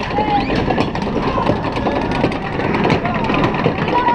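Log flume ride running through a dark tunnel: a loud, steady rumble with a rapid clatter of small clicks, and indistinct voice-like sounds and brief chirps over it.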